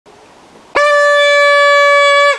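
Paper party horn blown in one long, steady, loud blare that starts under a second in.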